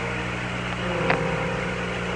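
Steady radio-channel hiss with a low hum between transmissions on a space-to-ground radio recording. A faint steady tone comes in about a second in.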